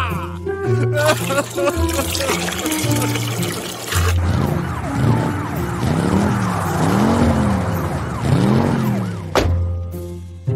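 Cartoon background music, first with a rushing, gushing water sound effect, then from about four seconds in a police car siren wailing, rising and falling about once a second. It cuts off suddenly near the end.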